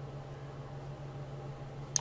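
Steady low hum with a single sharp click of a computer mouse button near the end.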